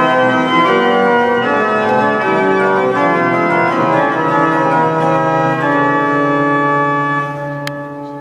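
Organ music with long held chords, dipping in level near the end.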